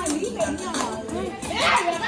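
Several voices chattering at once over background music.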